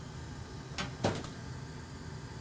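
A few light clicks and knocks of something being handled or set down on a workbench: one about 0.8 s in and a quick pair just after a second, over a low steady hum.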